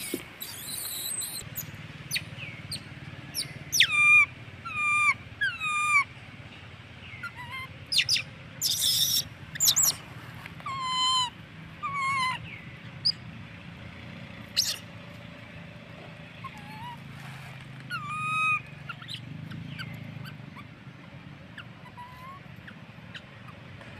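Baby long-tailed macaque giving repeated high, shrill calls that each drop in pitch, coming in clusters of several with pauses between, mixed with a few short harsh noisy sounds.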